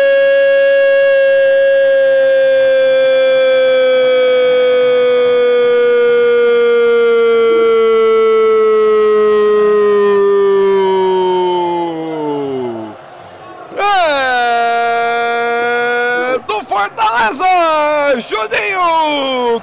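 A football commentator's drawn-out goal shout, "Gol" held on one high note for about twelve seconds and sagging slowly in pitch before it breaks off. After a brief breath he holds a second, shorter shout of about two seconds, then breaks into rapid shouted speech near the end.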